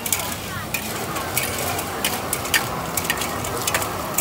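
Clams and basil stir-fried in a large metal wok: a steady sizzle with sharp, irregular clinks and scrapes of a metal ladle against the pan, two or three a second.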